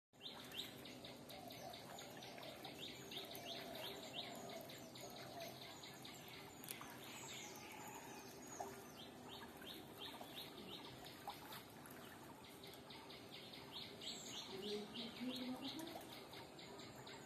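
Birds singing faintly: one bird repeats short, high, falling notes about four times a second in runs of one to two seconds, and other birds chirp more sparsely.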